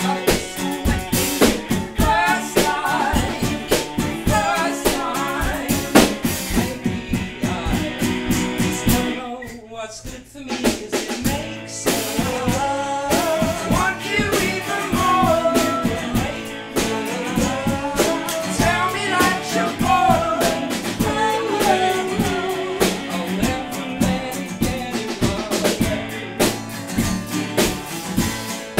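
Live band playing a song: a male lead voice singing over strummed acoustic guitars and a drum kit. The music thins out briefly about ten seconds in, then the full band comes back in.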